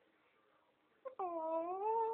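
A baby's drawn-out vocal squeal, starting about a second in and lasting about a second, its pitch dipping and then rising.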